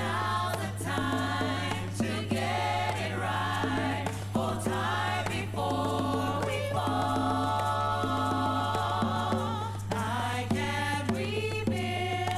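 A gospel choir singing in long held phrases, played from a vinyl record on a DJ turntable, with a steady low hum underneath.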